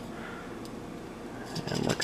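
Low room hiss, then several small sharp clicks and scrapes near the end as a knife blade is worked against the thin shell of a softshell clam to pry it open.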